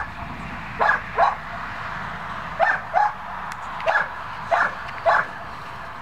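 A dog barking repeatedly: about seven short, sharp barks, several coming in quick pairs, over a steady background hiss.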